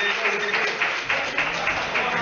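A small crowd clapping and applauding, with many irregular claps.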